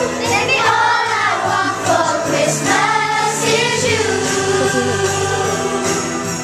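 A group of young girls singing together over a musical accompaniment with steady sustained low notes.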